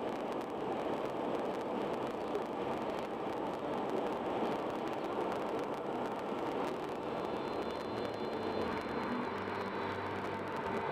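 Steady road and tyre noise with engine hum inside a car's cabin cruising at highway speed.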